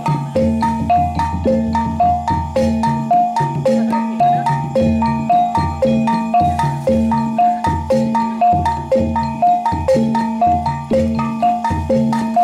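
Kuda kepang gamelan music: struck tuned metal percussion playing a fast, repeating melodic pattern over a steady low tone and regular drum beats.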